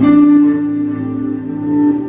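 Live improvised duet of electric guitar and keyboard: slow, held notes and chords, with a new note struck and sustained right at the start.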